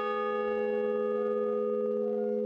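Large bell ringing from a single strike, one long steady tone with several overtones.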